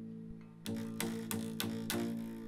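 The A string of an acoustic guitar is plucked about five times in quick succession, ringing out as a single low note. The string has just been deliberately detuned, so it sounds gross, nowhere near where it should be.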